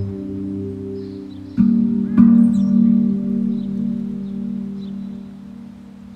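Steel tongue drum (pandrum / Rav Vast type) ringing in a slow meditation piece: two notes struck about a second and a half and two seconds in, their low ringing tones slowly fading away. Faint bird chirps sound high above.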